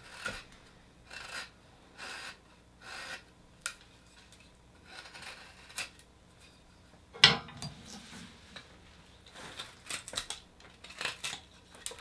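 Carving knife shaving a piece of cottonwood bark: short scraping cuts, roughly one a second, with one louder, sharper cut or knock about seven seconds in.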